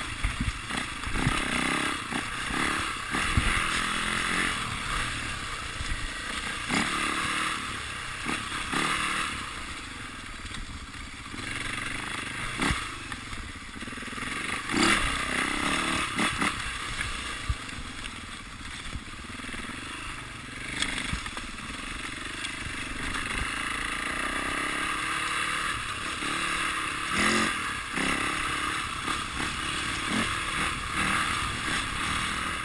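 Enduro dirt bike ridden over a rough forest trail, its engine running continuously under throttle, heard with clattering knocks and scrapes from the bike jolting over the ground every few seconds.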